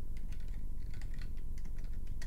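Computer keyboard being typed on: a quick, uneven run of short key clicks, about a dozen keystrokes, over a low steady hum.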